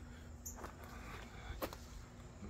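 Quiet outdoor background with a faint steady hum, light rustling and a small click about one and a half seconds in.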